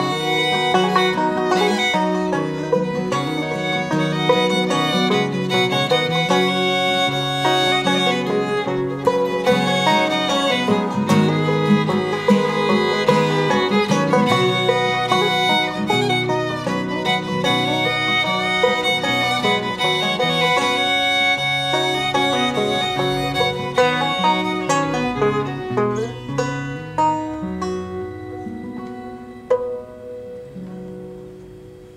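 Bluegrass string trio playing an instrumental passage on fiddle, banjo and acoustic guitar. The playing thins out toward the end and the tune closes on a final struck chord that rings away.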